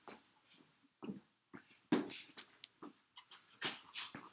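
A person coughing in short bursts and clearing the throat, several times, faint and away from the microphone.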